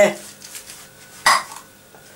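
A single short clink of kitchenware, metal or crockery struck together, a little over a second in.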